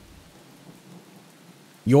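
Faint, steady rain ambience, an even hiss of rainfall with no distinct drops or rumbles; a voice starts speaking near the end.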